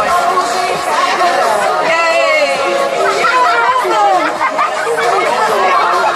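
Several voices chattering at once over music played through a loudspeaker.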